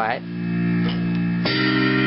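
Casio electronic keyboard playing a held B-flat chord, then a new chord struck about one and a half seconds in.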